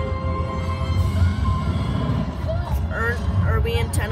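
Steady low road rumble inside a moving car's cabin, with music playing over it and a voice in the last second or so.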